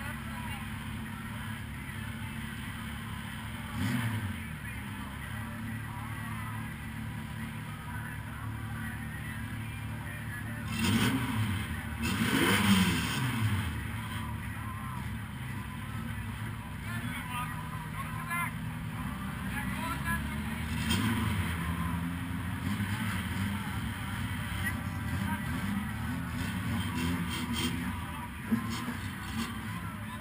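Stock car's 1300 cc-class engine running at idle, heard from inside the cockpit, with short revs about 4 seconds in, around 11 to 13 seconds in (the loudest, rising then falling), and again near 21 seconds.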